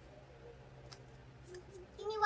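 Faint clicks of a metal cuticle nipper: a single snap about a second in and a quick run of three near the end, over a low steady hum.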